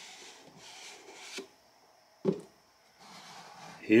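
Cardboard packaging rubbing and sliding as a watch box is opened, ending in a sharp click about a second and a half in. A short thump just past two seconds, then faint rustling again near the end.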